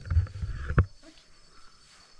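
Low rumble with two sharp knocks in the first second, handling noise on the microphone of a camera carried across the lawn. Crickets chirr faintly and steadily underneath.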